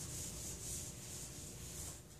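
Whiteboard eraser rubbing across a whiteboard, wiping off marker writing: a soft hiss that swells and fades with each of several strokes.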